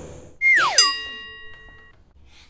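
Editing transition sound effect: a quick falling glide in pitch, then a bright chime that rings and fades away over about a second.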